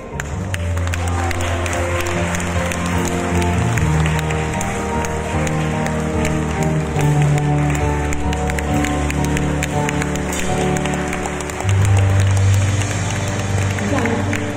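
Live band music: an instrumental passage of held chords that change about every second or two, over a strong bass line.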